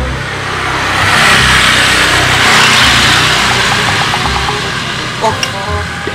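A motor vehicle passing by: its noise swells for about two seconds, then fades away over a low rumble. A short "oh" is spoken near the end.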